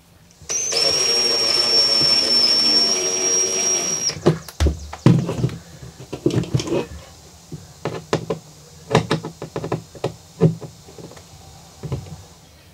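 Cordless screwdriver motor running steadily for about three and a half seconds as it drives a mounting screw into the corner of the charge controller's faceplate, followed by a series of sharp clicks and knocks from handling the tool and panel.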